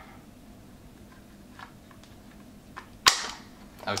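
Plastic fan shroud of a GTX 470 graphics card snapping free of its retaining tabs as it is squeezed: a couple of faint clicks, then one sharp, loud snap about three seconds in.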